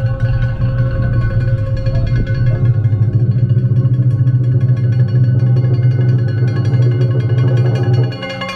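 Loud festival music: steady held notes with a fast pulse beneath them, unbroken throughout.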